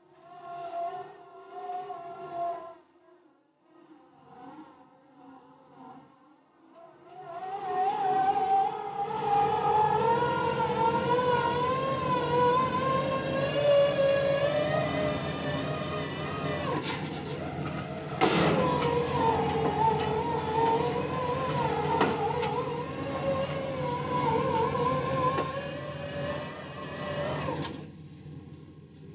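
Hydraulic rotary piling rig running: its diesel engine and hydraulics rise to a loud, sustained whine about seven seconds in, the pitch wavering as the load changes, over a low steady drone. A few sharp knocks come midway.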